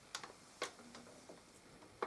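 Two faint clicks from handling a metal PC tower case as it is set in place, the second about half a second after the first, then only a faint room hush.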